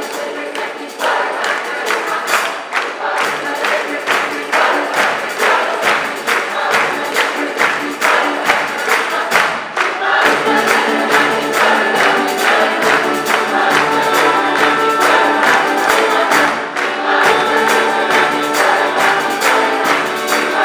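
Live Italian folk music: diatonic button accordion (organetto), acoustic guitar, frame drum and drum kit playing to a steady beat with a large choir singing. The sound grows fuller and louder about halfway through.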